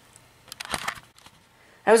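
Short, soft rustle with a few light clicks about half a second in, lasting about half a second: hands handling the iHome clock radio and plugging its power cord in at the back, after which its display lights up.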